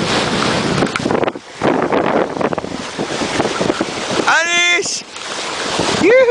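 Wind buffeting the microphone over the rush of water along a sailing yacht's hull as she sails. About four seconds in, a short high vocal call rises and falls in pitch.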